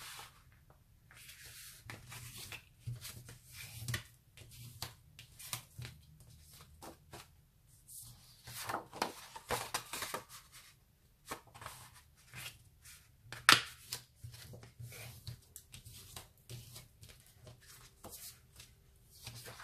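Sheets of A4 paper rustling and sliding as they are folded in half and creased with a bone folder, in irregular scrapes and crinkles. A single sharp tap stands out about two-thirds of the way through.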